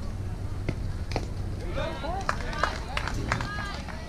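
Players and spectators shouting and calling out at a softball game, with several sharp clacks in between.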